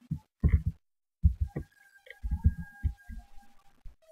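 A series of short, muffled low thumps in irregular clusters, with a faint steady two-note hum in the middle stretch.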